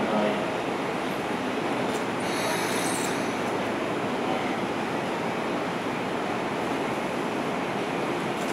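Steady noise of a Tokyo Metro 16000 series electric train standing at a station platform, with a brief high hiss about two seconds in.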